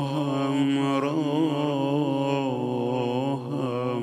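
A male maddah's amplified voice holding one long, slightly wavering sung note of a Persian mourning chant, easing off near the end.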